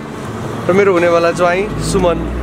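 A man speaking a few words to the camera, over a low, steady background hum that deepens near the end.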